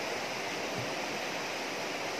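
A shallow river rushing over rocks in a steady, unbroken rush of water.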